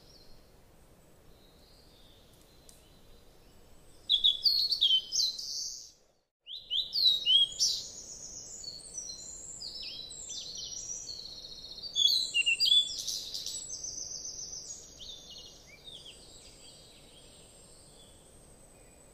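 Birds singing: many short, high chirps and whistles in quick runs, starting about four seconds in and breaking off briefly about six seconds in, then fading toward the end.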